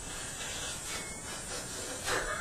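Soft rustling and rubbing noise in a few brief strokes, with no speech.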